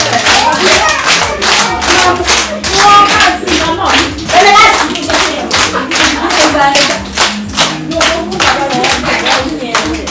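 A group of young children clapping their hands in a steady rhythm, about two to three claps a second, while singing together.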